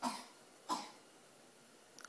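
Two short coughs, the second about 0.7 seconds after the first.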